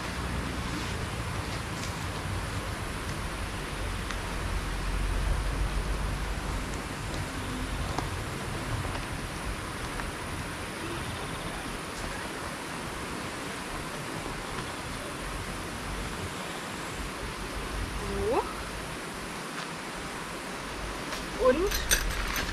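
Steady outdoor background hiss, with a low rumble in the first half that fades out. A brief voice comes in near the end.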